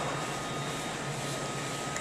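Steady room tone of a large store: an even ventilation-like hum with a low drone and a faint thin high tone.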